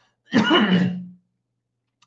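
A man clearing his throat once, a short sound of under a second with a falling pitch.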